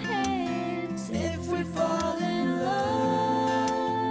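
A man and a woman singing a slow pop love-song duet into microphones over instrumental accompaniment, the melody ending on a long held note near the end.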